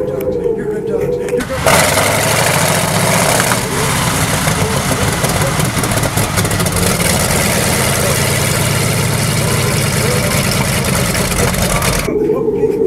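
Snowmobile engine running loudly with a rough, steady drone. It comes in suddenly about a second and a half in and cuts off sharply at the end.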